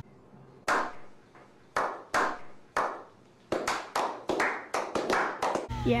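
A slow clap: single hand claps, each ringing briefly, spaced about a second apart at first, then quickening into fuller applause from a few people.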